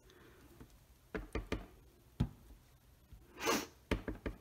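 Clear acrylic stamp block with a rubber fern stamp set down and pressed onto cardstock on a paper-covered table, giving a few light knocks in the first half. About three and a half seconds in comes a loud, breathy sniff from a running nose.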